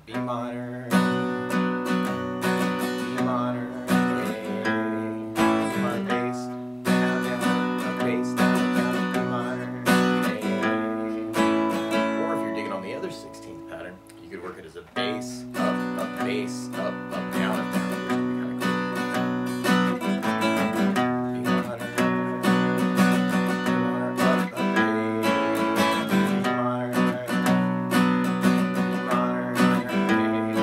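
Acoustic guitar strummed in a steady rhythm, the chord's bass note struck on the first down stroke: the song's intro progression in B minor. The strumming eases off briefly about halfway through, then picks up again.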